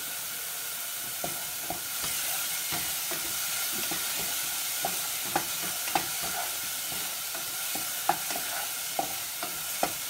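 Spice masala sizzling steadily in hot oil in a stainless saucepan. A spatula stirring it knocks and scrapes against the pan in several sharp clicks, most of them in the second half.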